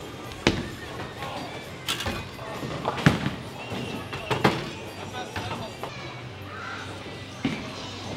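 Bowling alley sounds: about five sharp knocks and crashes of bowling balls and pins, the loudest about three seconds in, over the steady background noise of the hall.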